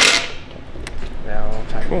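Cordless impact driver running a self-tapping screw home into a metal mounting bracket, stopping a fraction of a second in; a few light clicks follow.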